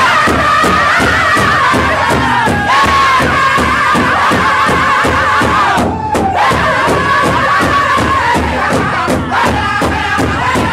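Pow wow drum group beating a large shared hide drum in a steady, even beat of about three strokes a second while the singers carry a high-pitched song whose melody slowly falls. The voices break off for a moment about six seconds in, then come back in over the drum.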